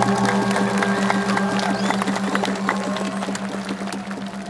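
The last stroke of a Balinese gong kebyar gamelan ringing out and slowly fading, its bronze tones pulsing several times a second with the beating of the paired tuning, while the audience applauds.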